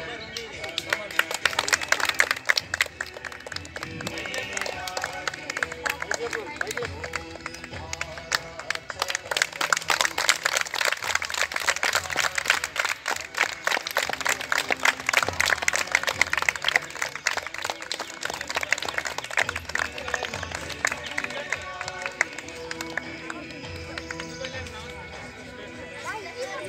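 A group of children clapping continuously by hand, a dense patter of claps, over music and voices.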